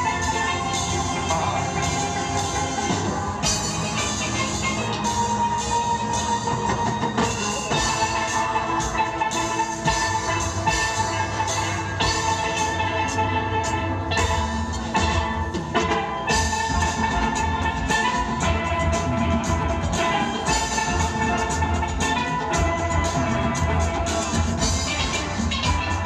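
Steel orchestra playing live: many steelpans ringing out a melody and chords, with drums keeping a steady beat underneath.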